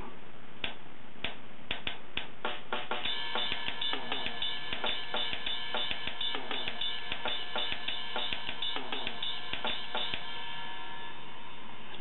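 Latin-feel drum loop from a metronome app playing at 100 beats per minute. It begins with a few spaced hits, the full repeating pattern comes in about three seconds in, and it stops about a second before the end.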